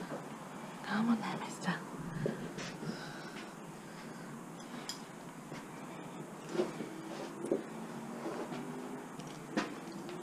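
Quiet handling of a horse's bridle: a few faint, scattered clicks of the leather straps and metal full-cheek bit. A soft murmuring voice comes and goes under them.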